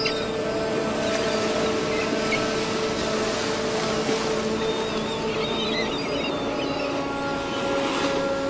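A boat's engine droning steadily under a constant hiss of sea noise.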